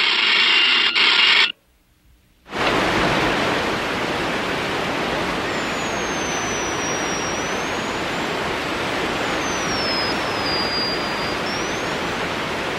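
Cartoon sound effects: a brief electronic ringing tone that cuts off, a second of silence, then a steady rushing hiss with a faint high whistle wavering above it.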